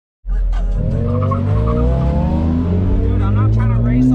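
Car engine heard from inside the cabin, pulling as the car accelerates away, its pitch rising steadily over the first couple of seconds over a deep low hum.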